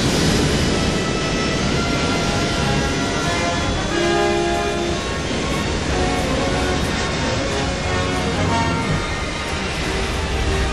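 Boeing 747's four jet engines running at takeoff power during the takeoff roll, a steady loud roar, with film score music playing over it.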